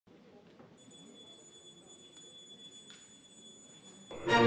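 Near silence: faint room tone with a thin, steady high-pitched whine that comes in about a second in.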